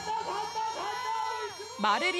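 A man's voice drawing out a long sung or chanted line, holding steady notes for about a second before the pitch falls away near the end.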